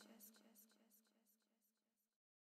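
Near silence at the very end of a trap beat's fade-out, with only a barely audible trace of its regular ticks.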